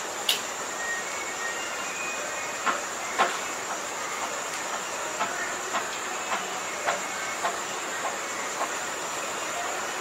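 A steady background hiss with a faint high whine. Soft clicks sound throughout, falling into an even rhythm of about two a second in the second half.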